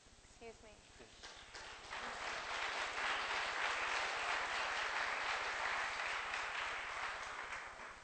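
Audience applauding, building up about two seconds in, holding, then thinning out near the end.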